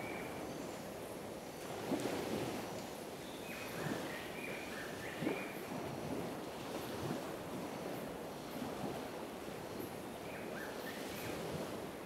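Gentle surf lapping at a shallow lagoon shore, with a steady rush of wind and water that swells softly every second or two. A few short, high chirps come through now and then.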